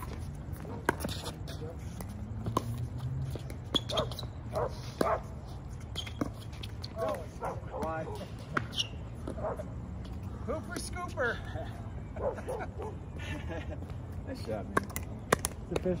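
Pickleball rally: paddles striking a plastic ball, making sharp pops at uneven intervals of about a second.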